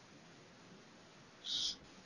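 Near silence, broken by one short soft hiss about one and a half seconds in.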